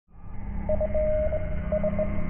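Opening of a news channel's intro jingle: a low bass drone fades in with a steady low note, and a higher note enters and pulses a few times, muffled throughout.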